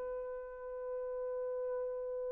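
Selmer Super Action 80 Series II baritone saxophone holding one long, steady high note with a clear, nearly pure tone.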